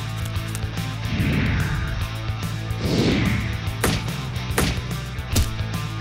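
Background music with added cartoon sound effects: two whooshes, about one and three seconds in, then three sharp hits near the end.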